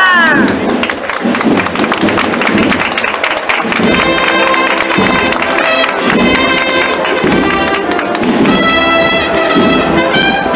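Crowd applauding. About four seconds in, a brass band starts playing a processional march.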